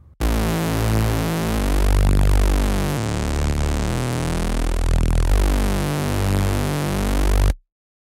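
Native Instruments Massive synth bass patch for wave music played on its own: a gritty, low synth bass line of several held notes that step in pitch, ending abruptly near the end.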